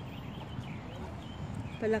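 Footsteps of a person walking on grass, with wind rustling on the microphone, at a moderate level and without a clear beat.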